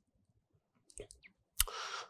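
A few faint clicks, then a sharper click about one and a half seconds in, followed by a short intake of breath.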